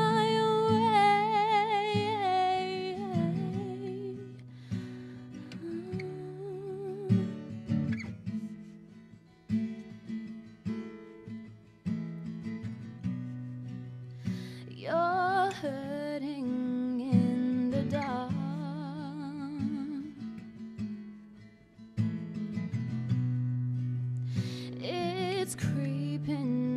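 Acoustic guitar strummed steadily while a woman sings long held notes with vibrato near the start, again midway, and briefly at the end. Between these the guitar plays on its own.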